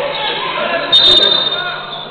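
Referee's whistle: one short, shrill, fluttering blast about a second in, stopping play, over the murmur of spectators in a gym.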